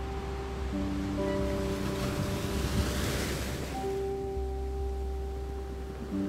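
Sea waves surging in: one swell builds to a peak about halfway through and then washes away. Under it runs slow instrumental music with long held notes that change chord every second or two.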